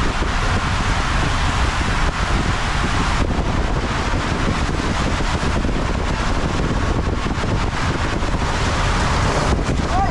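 Water rushing down an enclosed water-slide tube under a rider's inner tube, a loud steady rush with wind buffeting the microphone.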